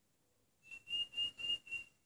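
A high whistling tone at one steady pitch, sounding in about five short pulses over a little more than a second, with faint rustling under it.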